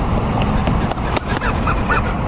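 Outdoor street noise: a steady low rumble with scattered faint knocks and brief bits of voices.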